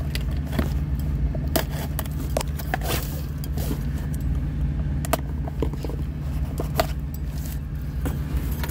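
Plastic packaging crinkling and rustling inside a cardboard box, with many scattered sharp clicks of handling, over a steady low hum.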